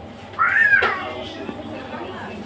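A single short, high-pitched cry that rises and then falls in pitch, lasting about half a second and starting about half a second in.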